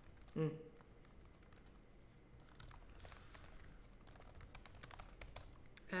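Typing on a mechanical computer keyboard: a quick, irregular run of faint key clicks.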